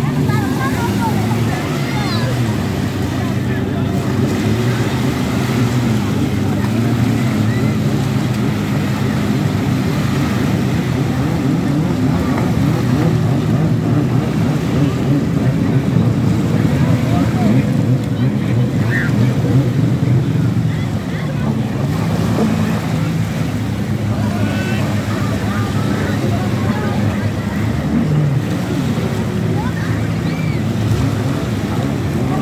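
Surf washing on the shore under a steady engine drone from jet skis out on the water, with voices of people in the sea calling out now and then.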